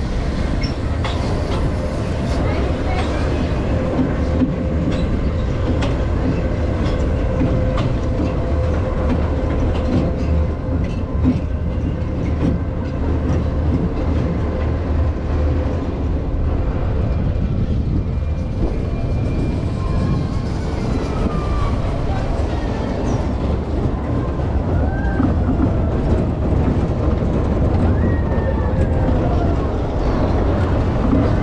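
Suspended family roller coaster (Zamperla Air Force 5) in motion on its steel track: a steady, loud low rumble of the wheels running along the rails.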